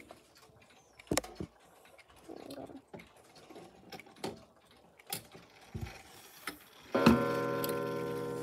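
Mechanical wall clock's striking mechanism sounding once near the end, a ringing strike with many overtones that dies away slowly, set off as its minute hand is pushed round by hand. Before it, a few scattered clicks from the hands and case being handled.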